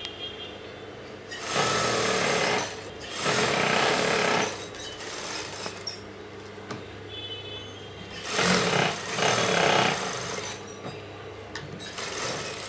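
Industrial sewing machine stitching in four short runs, two close together early on and two more about eight seconds in, with a steady motor hum in the pauses while the fabric is repositioned.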